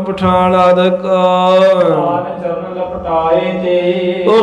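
A man's voice chanting in long, drawn-out melodic notes that glide slowly up and down, in the sung style of Sikh katha recitation.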